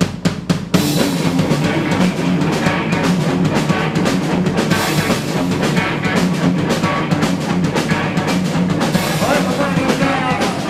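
A live punk rock band kicks into a song: a few sharp drum hits in the first second, then the full band of drum kit, electric guitar and bass playing loud.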